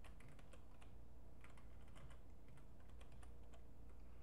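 Computer keyboard being typed on: an irregular run of light key clicks as a crossword answer is entered letter by letter.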